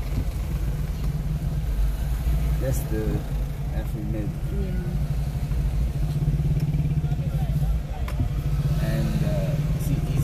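Steady low engine and road drone inside a car's cabin as the car creeps along in slow traffic, with faint indistinct talk a few seconds in and again near the end.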